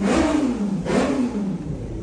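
A car engine revving up briefly and then falling back, its pitch sliding down over about a second.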